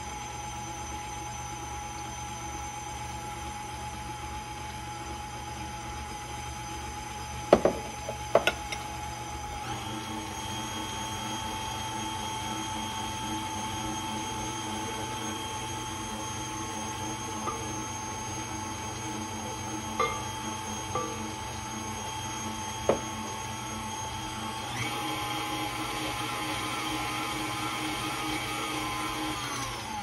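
KitchenAid stand mixer running with its flat beater turning in a glass bowl of cake batter, giving a steady motor whine. It changes speed twice, about ten seconds in and again near twenty-five seconds, and cuts off at the end. A few sharp knocks sound around the eight-second mark.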